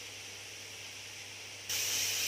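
Onion-tomato masala with dry spice powders frying in hot mustard oil in a kadai: a faint, steady sizzle. Near the end the sizzle turns suddenly louder and brighter as the masala is stirred with a ladle.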